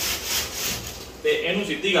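Flat nylon niwar tape being pulled through the woven strips of a charpai, a run of quick sliding strokes in the first second. A man's voice speaks briefly near the end.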